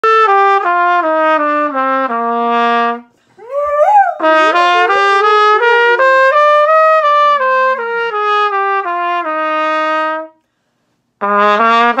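Trumpet playing a series of held notes, stepping down at first, with a Doberman howling along: a rising howl fills a short gap in the trumpet about three seconds in, and wavering howls continue under the following notes. The trumpet breaks off briefly near the end and starts again.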